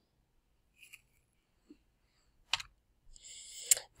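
Two sharp clicks about a second apart against near-silent room tone, the second just after a short inhaled breath: a computer mouse clicked to advance a slide.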